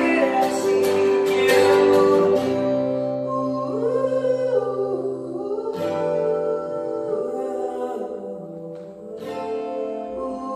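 A male voice singing a slow ballad over digital piano and acoustic guitar. The guitar strums busily for the first couple of seconds, then the accompaniment settles into held chords under the voice.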